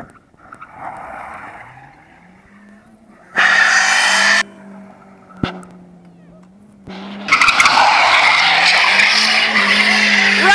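1994 Toyota Corolla doing donuts: the engine revs high and steady while the tyres squeal. One squeal lasts about a second, starting about three and a half seconds in, and a long continuous squeal starts about seven seconds in.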